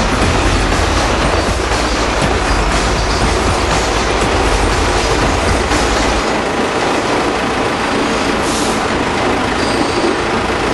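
Loud, steady city street noise with a heavy low rumble that drops away about six seconds in.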